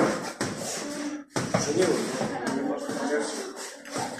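Indistinct, quieter voices in a gym room, with one sharp knock about a second and a half in.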